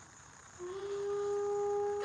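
Near silence, then about half a second in a single held musical note enters with a slight upward slide and stays steady, a low drone used as background music.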